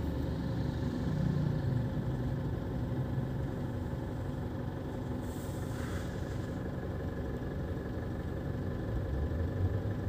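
Steady low rumble of a car's engine heard from inside the cabin.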